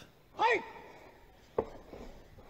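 Faint arena sound from the fight footage: a short voice calls out once about half a second in, then a single sharp knock comes near the end.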